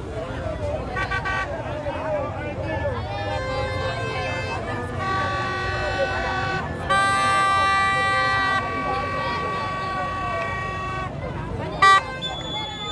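Vehicle horns sounding in long, steady, overlapping blasts at different pitches over the noise of a large crowd; the loudest blast comes a little past halfway and lasts about a second and a half. A short loud burst sounds just before the end.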